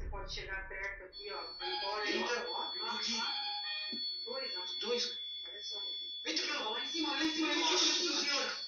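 Several ghost-hunting sensor devices going off at once: steady high-pitched electronic alarm tones start about a second in and hold, with voices talking over them.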